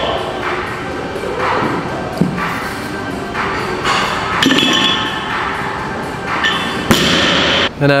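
Loaded barbell being lifted in a gym, with metal clinks from the plates and a sharp thud about seven seconds in, under background music.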